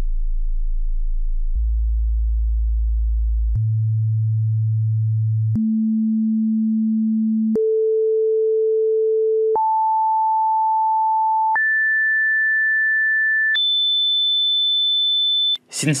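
Pure sine-wave tones on each A from A0 to A7, the octaves of A440 up to 3520 Hz: eight steady tones of about two seconds each, stepping up one octave at a time, with a small click at each step.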